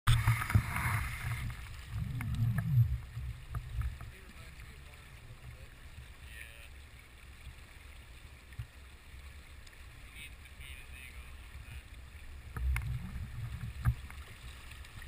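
River water sloshing and lapping against a camera held at the water's surface, heard as a muffled low rumble with irregular bumps. It is loudest in the first few seconds and again near the end, and quieter in between.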